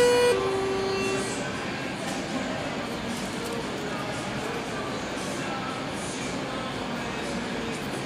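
Elevator arrival chime: a two-note falling ding-dong whose lower second note rings on for about a second, then a steady background hum as the landing doors open.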